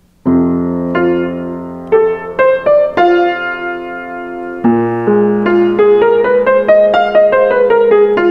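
Grand piano played: a left-hand chord struck and held under a right-hand melody climbing note by note, a new chord about halfway through, then a quicker line rising and falling back. The phrases run on an F major pentatonic (major blues) scale.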